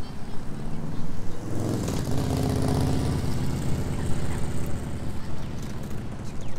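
A motor vehicle's engine passing on a city street: a low engine hum that comes in after about a second and a half and dies away near the end.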